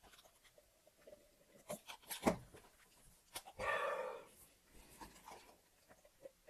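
A person handling and drinking from a plastic cup: a few faint clicks and knocks, and a short breathy noise lasting about half a second a little past the middle.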